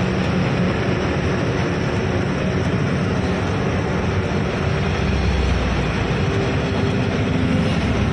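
Truck's diesel engine running under way with road noise, heard inside the cab: a steady drone with a low engine hum. A deeper rumble swells for a second or so about five seconds in.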